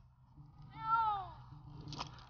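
A domestic cat stranded at the top of a dead tree meows once about a second in, a single call that rises and then falls in pitch.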